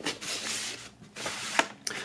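Paper and cardboard rustling and sliding as a vinyl record's paper inner sleeve and cardboard jacket are handled, with a couple of short clicks near the end.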